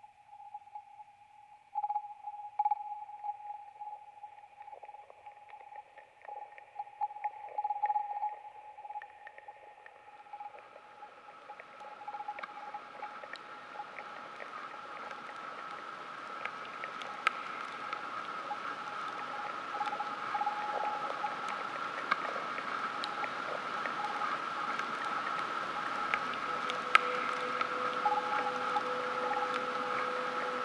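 Dark ambient instrumental music: a sustained high, wavering drone with faint crackles. About a third of the way in, a hissing wash and a second, higher drone join it, swelling slowly louder.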